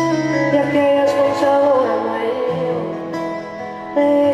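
Live acoustic ballad: acoustic guitars playing steady chords, with a woman's voice singing a wavering sustained line over them.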